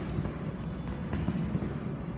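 A pony cantering past close by on the arena's sand footing: a low, muffled rumble of hoofbeats with a few faint knocks.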